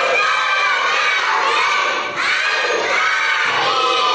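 A class of young children singing a line of an Arabic song together, many voices at once, loud and close to shouting, in two phrases.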